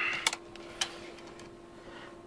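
Handling noise: a brief rustle and a few light clicks in the first second as the camera is moved in over the antenna, then a quiet room with a faint steady hum.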